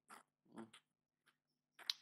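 Near silence: faint room tone with a low hum and two brief faint noises, about a tenth of a second and half a second in.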